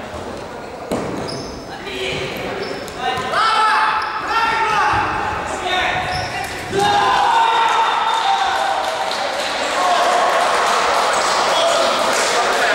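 Players' shouts echoing in a sports hall, with the knock of a futsal ball being kicked about a second in. The shouting gets louder about seven seconds in and stays loud.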